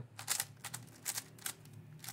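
Plastic 3x3 speed cube being turned quickly through a short algorithm, its layers clicking in a quick string of about six sharp clicks.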